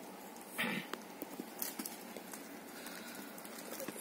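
Hands handling and patting folded chiffon sarees on a table: soft fabric rustling with scattered light taps, and one brief louder rustle about half a second in.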